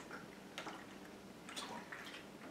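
A plastic water bottle being handled and set aside: a few faint light clicks and knocks, one about half a second in and two more near the end.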